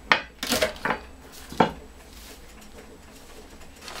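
Four short knocks and clatters in the first two seconds as things are handled on a tabletop, the last the loudest, then only quiet room tone.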